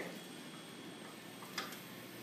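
Quiet hallway room tone with a single sharp click about one and a half seconds in, as a child presses the push button on a wall-mounted drinking fountain.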